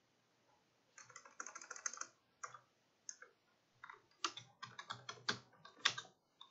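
Typing on a computer keyboard: after a brief pause, a quick run of keystrokes about a second in, a few single taps, then a denser run of keystrokes near the end.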